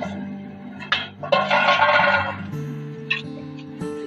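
Background music of steady held tones. About a second of hiss rises over it partway through.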